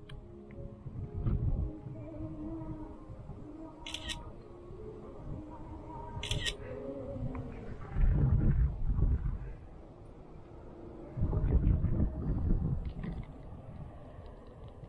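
Smartphone camera shutter sound twice, about two and a half seconds apart. Later, wind buffets the microphone in two gusts.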